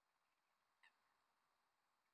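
Near silence, broken by one faint, short waterbird call a little under a second in.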